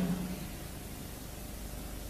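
Steady hiss of the recording's background noise, with nothing else sounding; the tail of a spoken word fades out at the very start.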